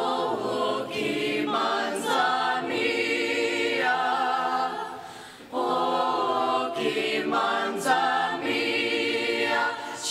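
School mixed-voice choir singing in harmony under a conductor. The first phrase dies away about five seconds in, and the choir comes in together on a new phrase half a second later.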